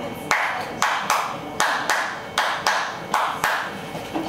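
Hand claps beating out a repeating rhythm, about nine sharp claps with alternating longer and shorter gaps between them, to teach a clap-along pattern.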